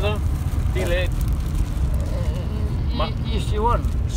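Steady low rumble of road and engine noise inside a moving car's cabin, with short bits of men's speech near the start, about a second in, and around three seconds in.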